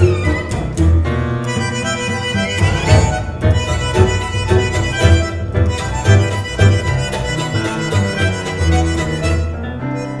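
Tango ensemble of piano, two violins, viola, two bandoneons and double bass playing a milonga, with a strong bass line and sharply accented rhythm.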